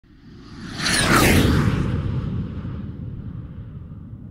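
Whoosh sound effect that swells about a second in and sweeps down in pitch, over a low rumble that slowly fades: a logo intro sting.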